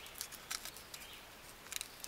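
Faint crinkling of a foil antacid-tablet packet with a few light clicks and snaps as the tablet is broken in half inside it, a small cluster near the end.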